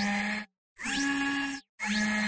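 Three short whirring, hissing sound effects, each under a second with brief silent gaps between them, with a steady low hum and quick pitch sweeps. They sound like a motorised camera aperture, made for an animated iris logo.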